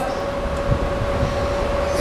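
Steady background rumble with a constant mid-pitched hum.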